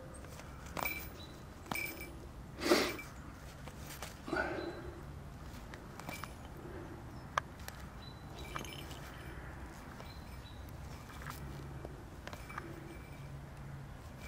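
A goshawk on its kill, a cock pheasant, stirring dry twigs, leaves and feathers in the undergrowth: scattered short rustles and crackles with a few light clinks, the loudest about three seconds in.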